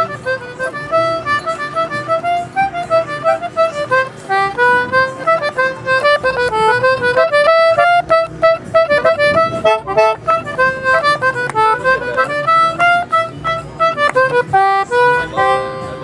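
Anglo concertina played solo: a quick reedy melody with chords over steadier held lower notes, pausing briefly near the end before settling on a held chord.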